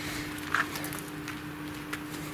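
Footsteps on asphalt, a few faint irregular steps, over a steady hum.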